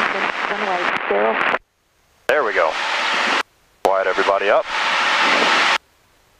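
Indistinct speech over an aircraft headset intercom, cutting in and out as the squelch opens and closes; while it is open, engine and cabin noise come through behind the voice, and near the end it stays open on that noise alone.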